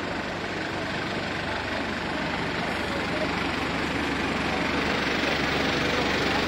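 Busy city street ambience: a steady rush of road traffic with passers-by talking, growing a little louder toward the end.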